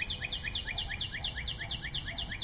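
A rapid, even run of short, high, falling chirps, about five a second, like a cartoon bird twitter sound effect.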